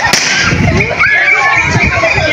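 A handheld confetti cannon pops sharply at the start, with guests' voices around it.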